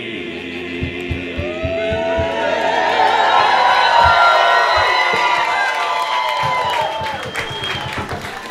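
Men's a cappella vocal ensemble singing together in close harmony, getting louder toward the middle, with crowd voices joining in and some scattered claps or knocks.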